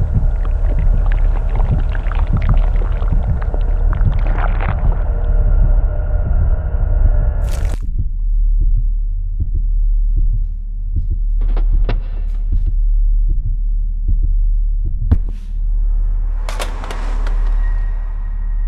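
Horror-film sound design: a loud low drone with a steady throbbing, heartbeat-like pulse. A dense noisy layer over it cuts off abruptly about eight seconds in, leaving the low pulsing drone with a few sharp clicks, and a swell of noise rises near the end.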